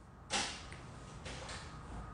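Movement noise of a person settling on a fabric sofa: a sudden creak and rustle about a third of a second in that fades quickly, followed by fainter rustles.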